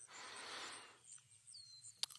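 Faint forest ambience: a soft breathy hiss in the first second, then a single short falling bird chirp near the end, over faint insect chirping.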